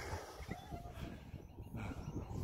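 Quiet outdoor ambience: a faint low rumble of wind on the microphone.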